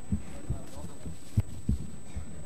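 A few irregular dull low thumps, with a faint voice in the background and a faint steady high-pitched whine.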